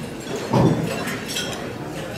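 Glasses and silverware clinking on dinner tables in scattered light taps, over a background murmur of voices, with one brief louder low sound about half a second in.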